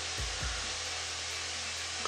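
Steady hiss and low hum of room and recording noise, with a brief low thud about a quarter second in as the vinyl figure is handled.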